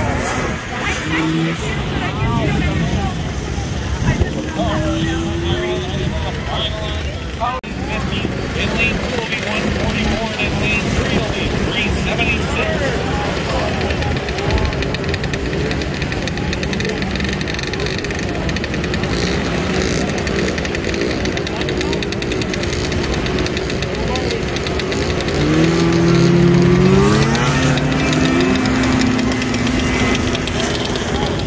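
Vintage snowmobiles' two-stroke engines accelerating down a drag strip, their pitch climbing as they rev, with the loudest rising pass near the end. People chat throughout.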